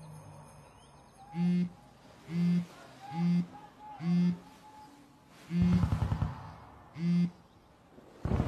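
A mobile phone vibrating on a wooden table in six short buzzes, roughly one a second, as alerts come in. About halfway through a louder low rattling rumble sounds.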